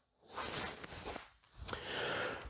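Soft movement sounds of a man shadowboxing, punching into the air: two hushed rushes about a second apart, from his breath and loose clothing as the punches go out.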